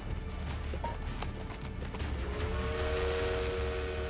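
A steam locomotive whistle blows from a little past halfway in, a steady chord of several tones held without a break, over background music and a low rumble.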